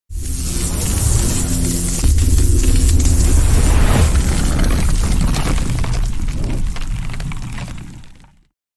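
Cinematic logo-intro music and sound design: deep booms under a bright, noisy swell, starting abruptly, surging about two seconds in, and fading out near the end.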